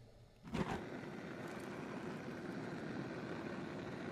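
Homemade tin-can vaporizing fuel burner running, its jet of vaporized fuel burning with a steady hissing rush that starts suddenly about half a second in.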